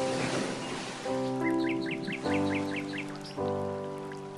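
Calm background music of sustained chords that restart every second or so. A rain-like hiss fades out over the first second, and a quick run of about eight high, bird-like chirps comes in the middle.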